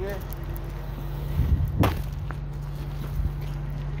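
An engine running steadily at idle as a low hum, with one sharp knock a little under two seconds in.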